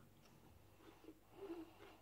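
Near silence: room tone, with a few faint soft sounds in the second half.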